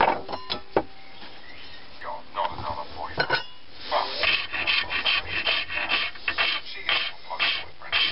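A hand file worked back and forth over wood clamped in a bench vise, in a run of rough rasping strokes about two to three a second from about four seconds in, after a few light knocks.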